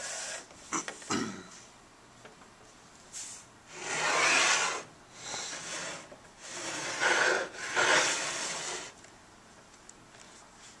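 Rubbing and scraping noises from an ultrasonic transducer being slid over a steel calibration block, in several bursts of about a second each, the loudest about four seconds in.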